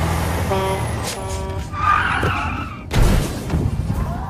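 Film-soundtrack taxi cab driving: engine running with tyre squeals through the first two seconds, then a loud thump about three seconds in.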